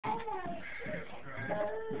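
A dog whining in high, wavering calls that fall in pitch, during a rope tug-of-war game. A person laughs near the end.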